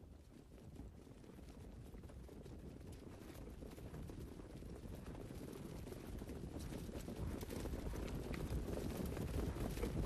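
Hoofbeats of a field of trotters pulling sulkies, mixed with the low rumble of the starting-gate pickup truck, growing steadily louder as the field approaches behind the mobile gate.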